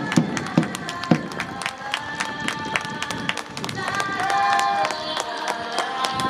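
A few hand claps in the first second, then music with long held notes over background voices.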